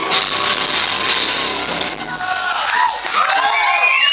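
Heavy metal band's closing crash ending the set: drums, cymbals and distorted electric guitar hit together and die away over about two seconds, followed by shouts and cheers from the crowd.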